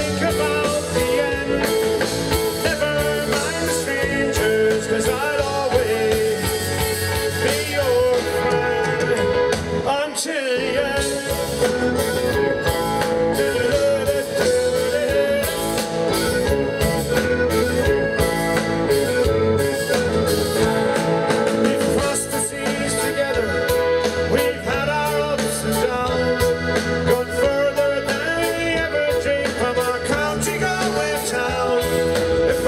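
Live folk-rock band playing a song, with strummed acoustic guitar and drum kit driving a steady beat. The bass and drums briefly drop out about ten seconds in.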